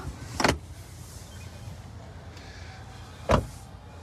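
Two loud clunks over a steady low hum: a 2019 Chevrolet Equinox's rear seatback latching upright about half a second in, then a car door shutting with a deep thud near the end.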